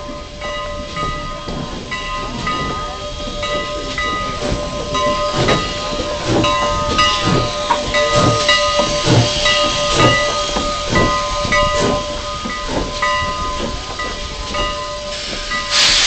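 Steam locomotive arriving with its train, its bell ringing steadily and repeatedly, with a run of heavy knocks about one a second through the middle. A short, loud burst of steam hiss comes right at the end.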